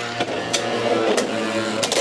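Two Beyblade X spinning tops whirring around a plastic stadium: a steady mechanical hum with a few light clicks as they glance off each other or the rail.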